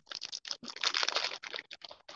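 Typing on a computer keyboard: a quick, uneven run of key clicks with short breaks.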